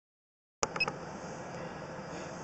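Dead silence from the paused recording, then a click as the recording restarts, a couple of brief high beeps, and a steady faint background hiss.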